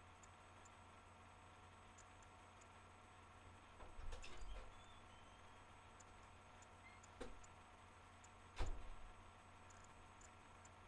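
Near silence: room tone with a steady low electrical hum, broken by a soft knock and rustle about four seconds in, a light click about seven seconds in, and a sharper knock about a second later.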